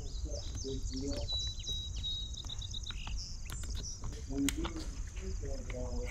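Colt 901 rifle being taken down by hand: a few light metallic clicks as the takedown pins are pushed and the .308 upper receiver pivots off the lower. Insects chirp and whine steadily in the background.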